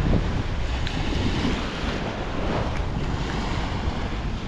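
Small surf waves washing up on a sandy beach, mixed with wind buffeting the microphone in a steady low rumble.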